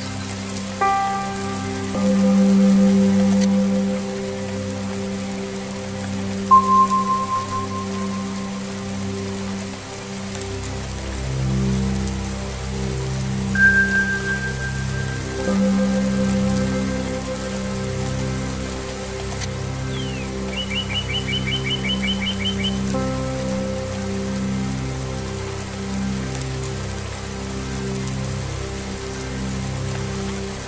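Steady rain mixed with Tibetan singing-bowl music: ringing bowl tones struck every few seconds and left to fade over low pulsing drones, with a deeper drone coming in about a third of the way through. A bird gives a short rapid trill about two-thirds of the way in.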